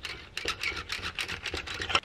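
Stainless-steel push-down (plunger) hand whisk being pumped against a countertop, its spiral shaft spinning the wire head with a fast run of rattling clicks, about eight a second.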